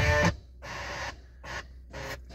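Car radio playing guitar music that cuts off about a third of a second in as the FM tuner is stepped to another station, followed by faint, broken snatches of sound between stations.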